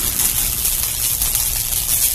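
Sound-design bed of an animated end screen: a steady low rumble with a hiss above it, no clear pitch or beat.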